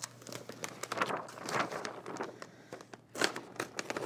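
Paper backing sheet being peeled off a large vinyl decal and handled, crinkling and rustling unevenly, loudest about three seconds in.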